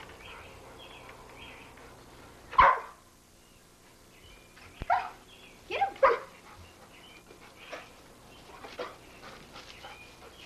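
A dog barking in short, sharp barks: a loud one about two and a half seconds in, a run of three more in the middle, and fainter ones after.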